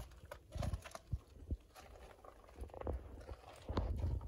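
Faint, irregular low thumps and a few light knocks from footsteps and from handling of a handheld phone camera.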